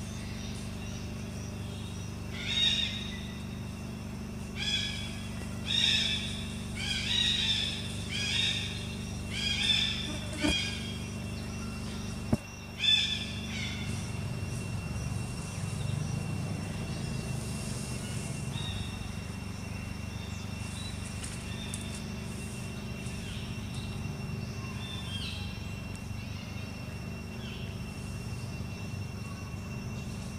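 A series of about eight short, high-pitched animal calls, roughly one a second, over a steady low hum. A faint steady high tone carries on after the calls stop.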